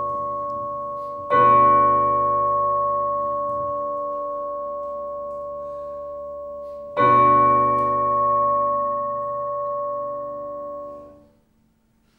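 Piano chords struck and left to ring: one already sounding is cut across by a new loud chord about a second in and another about seven seconds in, each slowly dying away, the last fading out about eleven seconds in.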